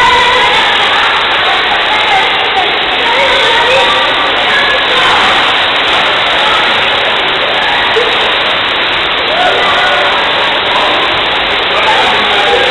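Steady rush of churning water from a leisure pool's jets and a water spout, with the voices of a crowd of bathers mixed in.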